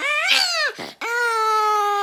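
Small Pomeranian-type dog howling: two drawn-out high calls, the first rising and falling over about half a second, the second held at one steady pitch for about a second.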